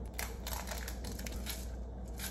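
Pepper grinder being twisted by hand, giving faint, irregular crunching clicks as it grinds pepper.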